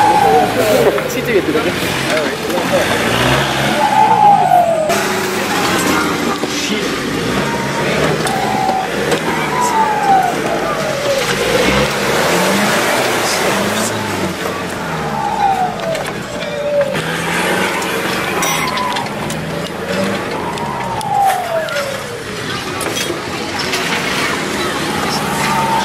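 Off-road 4x4 engines revving hard as the vehicles drive through mud, the pitch rising and then dropping back repeatedly, with voices mixed in.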